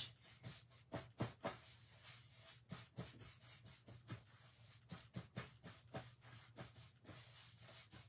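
Small paintbrush stroking and dabbing paint over a ridged painted surface: a run of faint, short, irregular brush strokes, a few a second.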